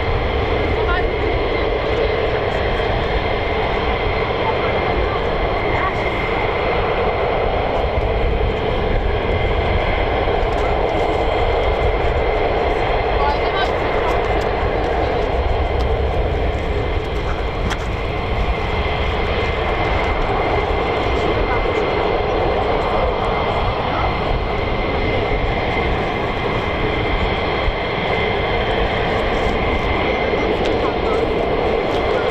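Jet engines of several F-15E Strike Eagles idling on the ground: a steady, loud rumble with a constant high whine.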